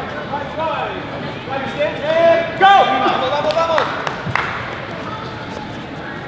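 Voices shouting and calling out in a large, echoing hall during a sparring exchange, loudest in the middle, over a background of crowd chatter. A few sharp impacts come about three and a half to four and a half seconds in.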